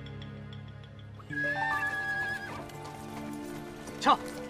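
Horses in a mounted column walking, hooves clip-clopping and a horse neighing, over a music score that grows louder about a second in.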